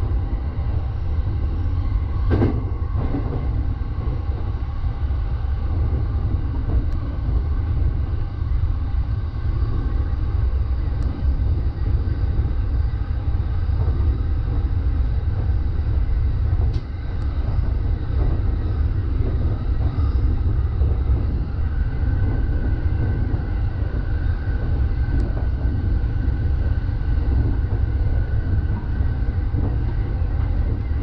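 Electric commuter train running along the line, heard inside the driver's cab: a steady low rumble of wheels on rail. A sharp knock comes about two and a half seconds in and another a little past the middle, and a thin steady tone joins for the last third.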